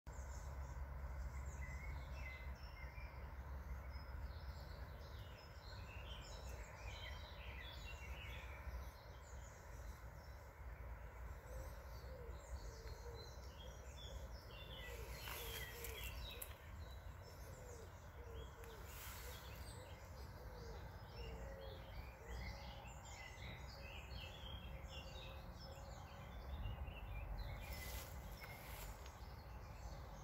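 Wild birds singing, a scatter of many short chirping notes throughout, over a steady low rumble of outdoor background noise.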